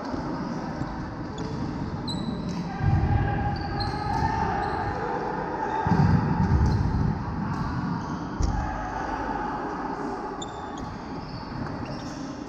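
Badminton play in a large sports hall: rackets hitting the shuttlecock and court shoes squeaking on the wooden floor, with several low thuds, all echoing in the hall.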